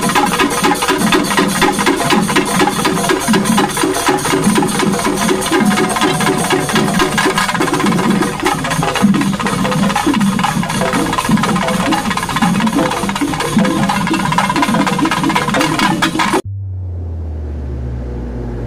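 Fast, dense percussion music of drums and clashing cymbals with pitched notes underneath. It cuts off abruptly near the end, leaving a few low, steady tones.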